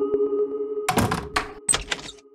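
A metal latch on a wooden door being worked, giving a quick run of about six sharp clacks from about a second in, over sustained background music that thins out as the clacks begin.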